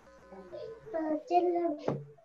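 A woman's high-pitched voice speaking briefly over a video-call connection, the words not clear, with a sharp click near the end.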